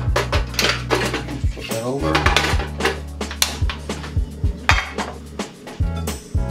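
Sharp metallic clicks and clanks, more than a dozen, from a portable butane camp stove being loaded and lit and a frying pan set on its grate, over background music with a steady bass line.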